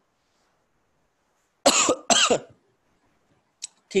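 A man coughs twice in quick succession after a silent pause, then a short click sounds near the end.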